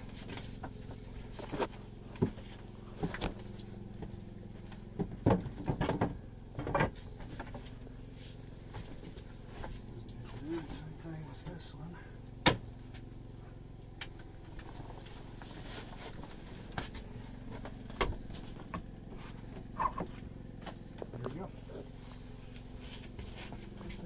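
Scattered knocks and clicks of a metal bed-support bar being handled and fitted under a popup camper's pull-out bed, a cluster of them a few seconds in and single sharp ones later. A steady low machine hum runs underneath.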